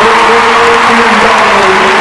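A live band holding its closing notes, the long tones fading near the end, while the audience applauds.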